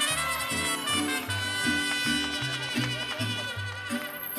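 Live mariachi band playing, trumpets and violins holding sustained notes over a bass line that steps from note to note about twice a second.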